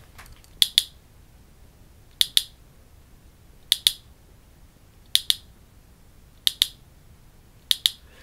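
A hand-held clicker clicked six times, each time a sharp double click, about once every second and a half.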